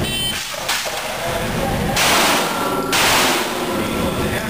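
Shot-timer beep, then a single clatter as the shovel is dropped on the concrete floor, then two loud pistol shots about two and three seconds in, each with a long echo in the indoor range.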